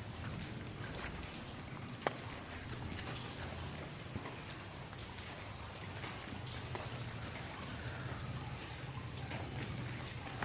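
Steady patter of water trickling and dripping into a cave pool, with scattered small drip ticks and one sharper click about two seconds in.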